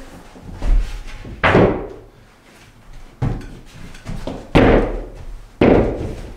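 Wooden side panel being knocked and shoved into place against a plywood desk frame: a series of thuds and knocks, about five, the loudest ones around the middle and near the end.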